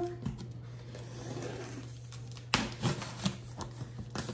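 Kitchen knife slitting the packing tape along the seam of a cardboard box: a faint scraping, then a quick run of sharp scratches and taps of the blade on the cardboard about two and a half seconds in.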